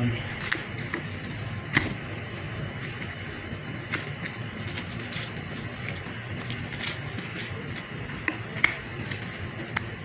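Butcher's knife working through a raw lamb leg on a cutting board, with a handful of sharp clicks and knocks scattered through, the loudest a little under two seconds in and near the end, over steady room noise.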